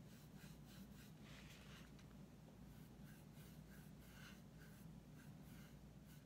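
Faint scratching of a small paintbrush stroked over a gourd's hard shell, in short repeated strokes, over a low steady hum.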